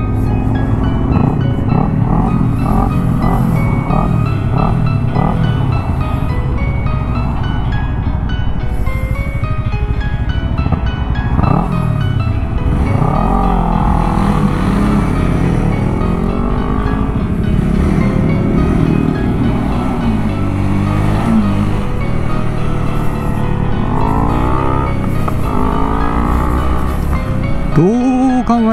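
Background music over a motorcycle engine, a Honda Rebel 250 single, pulling away and accelerating, its pitch rising and dropping back several times through the gear changes.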